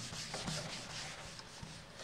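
Whiteboard eraser rubbing back and forth across a whiteboard, a soft hiss repeating in quick, even strokes as marker ink is wiped off.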